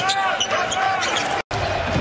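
Basketball game sound from the court: sneakers squeaking and the ball bouncing on a hardwood floor over arena hum. The sound drops out completely for a moment about one and a half seconds in.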